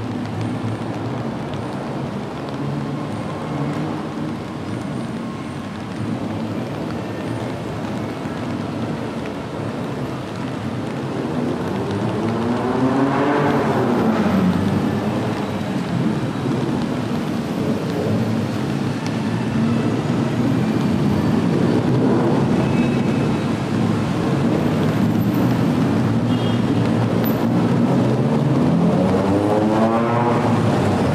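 Rain and traffic on a wet city street. About halfway through, a vehicle passes with its engine pitch rising and then falling as it goes by, and the sound stays louder after that. Another vehicle approaches near the end.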